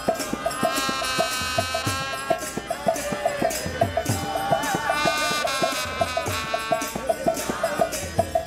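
Kirtan: a group singing a chant over a harmonium's sustained reed tones, with low mridanga drum strokes and a steady clicking beat about four times a second.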